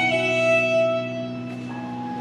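Violin played with the bow in a slow, sustained melody: a long held note, then a softer, quieter passage in the second half.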